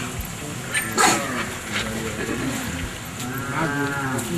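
A cow mooing in drawn-out calls, with a short sharp noise about a second in.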